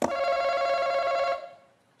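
Game-show face-off buzzer: an electronic ringing tone that sounds the instant a contestant slaps the button, signalling who buzzed in first. It holds steady for about a second and a half, then dies away.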